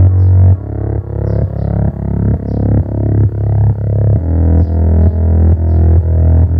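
Bass-test music played through a Kenwood KW-55 tube receiver and loudspeaker: a deep, loud bass line of repeated notes, about two a second, with little treble.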